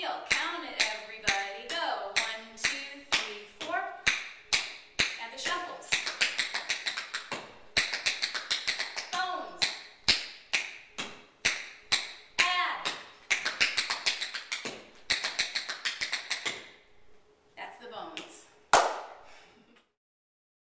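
Tap shoes on a wooden floor: a tap dancer's quick runs of taps, steps and heel drops. The taps thin out near the end and finish with one loud stamp.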